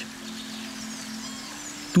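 Sustained low drone of soft background music, held steady, with faint high chirping sounds over it.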